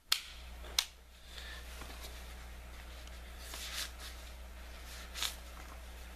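Handling noise from a compact polymer-framed pistol and its fabric pocket holster: three short sharp clicks, one near the start, one just before a second in and one a little after five seconds, with a soft rustle in between, over a steady low hum.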